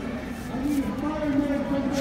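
Speech only: indistinct voices and chatter carrying through a large hall, with no distinct non-speech sound.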